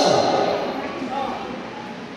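Speech in a large hall: a man's amplified voice ends at the very start, its echo dies away over about half a second, and faint voices follow.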